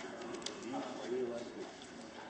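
Indistinct murmur of people talking in a meeting room, with a brief click about half a second in.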